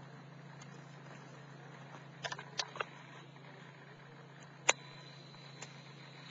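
Wood fire crackling: three sharp pops a little over two seconds in and one louder pop later on, over a steady low hum.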